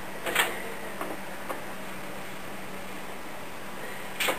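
Steady whir of a running desktop PC's fans with a constant low hum. There are a few light knocks in the first second and a half as the case is handled.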